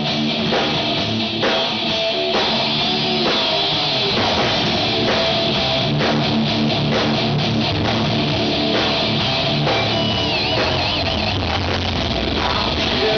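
Rock band playing live and loud: electric guitars and a drum kit, with no vocals. About ten seconds in, a high wavering note rises above the band.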